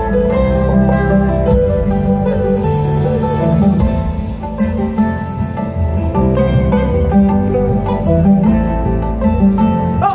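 Live band music: guitars and other plucked strings playing a melody over drums and percussion, continuous and loud.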